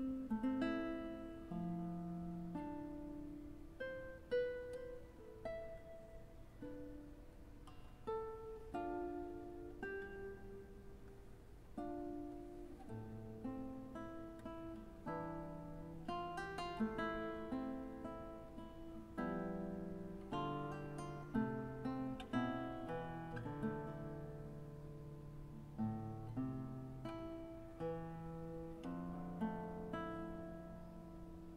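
Solo nylon-string classical guitar played fingerstyle: a melody of plucked notes and chords, each struck and left to ring, over held bass notes.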